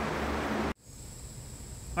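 Steady low background hum that cuts off abruptly less than a second in. It is followed by a quieter background with a thin, steady high-pitched tone.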